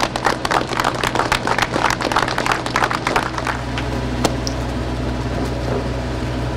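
A small crowd clapping, dense for about three and a half seconds and then dying away to a few last claps, over a steady low hum.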